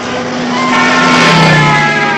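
Cartoon brass-band score with a swelling, noisy crash-and-rush sound effect laid over it, loudest about a second and a half in, as the character is flung out of the tree in a cloud of dust.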